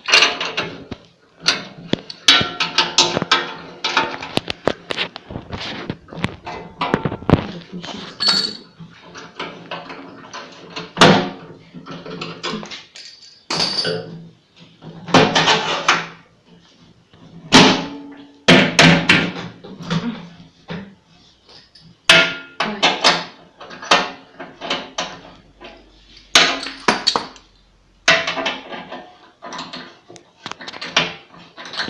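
Steel parts and hand tools clanking and knocking as a sheet-steel part is bolted onto the frame of a wheeled brush cutter. Sharp knocks come every second or so, some with a brief metallic ring.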